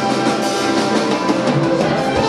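A live symphony orchestra playing, with percussion beating through the music.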